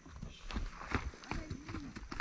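Footsteps of someone walking over grass and dirt, a step about every half second, with faint voices.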